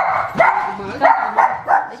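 A dog barking repeatedly, about five short barks in quick succession.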